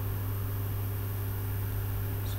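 A steady low hum with a faint even hiss behind it, unchanging throughout.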